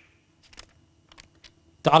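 A few faint, short clicks in a pause, then a man's voice starts speaking near the end.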